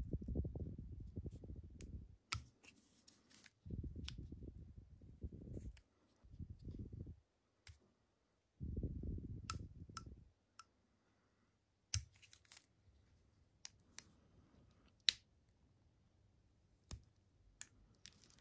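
Faint handling and small clicks of an X-Acto craft knife cutting a circle in black heat-shrink tubing around a push-button switch. Several stretches of low rubbing come in the first ten seconds, with scattered sharp clicks throughout.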